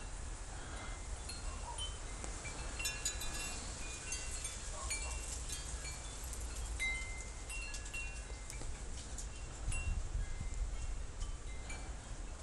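Chimes ringing in scattered, irregular short high notes over a low steady rumble.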